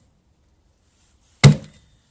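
An axe chopping into a whole beef head on a table: one sharp, heavy blow about one and a half seconds in, with a short fading tail. The end of the previous blow fades out at the start.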